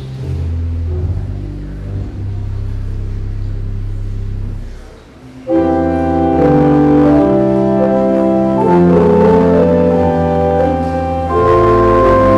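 Church organ playing sustained chords: soft and low at first, fading briefly, then coming in much louder with full chords reaching higher.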